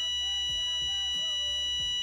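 A steady electronic beep tone, several pitches held together, that holds for about two seconds and then cuts off suddenly.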